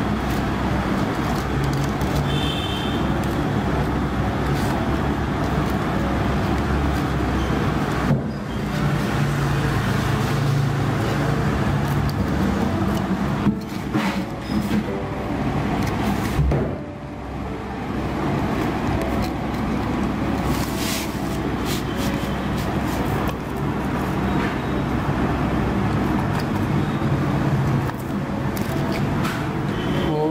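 Steady low mechanical rumble and hum in the background, briefly dipping twice, with a few light clicks.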